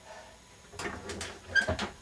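A few short knocks from a home leg-curl bench and its weight plates as a 95-pound hamstring curl is lifted, starting about three-quarters of a second in. Near the end comes a brief strained vocal sound of effort.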